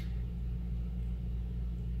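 Steady low background hum with no other sound: a constant drone.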